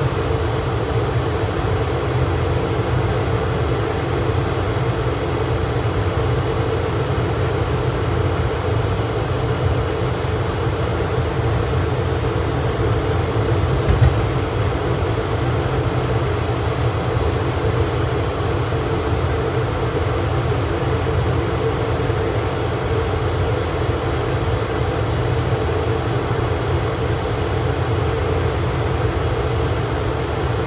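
Steady driving noise heard inside the cabin of an Opel Rocks-e electric microcar on the move: an even low rumble with no engine note. There is one short knock about fourteen seconds in.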